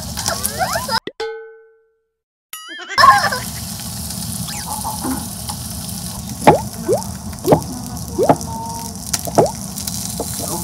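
Bacon sizzling in a hot dish with a steady hiss, broken by a few short sharp clicks or pops in the second half. About a second in, the kitchen sound cuts out for a moment under an edited-in cartoon sound effect: a struck chime that rings away, then a wobbling boing.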